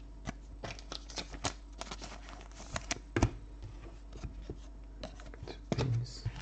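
Trading cards and packs being handled on a table: scattered light clicks and taps, with a faint steady hum underneath.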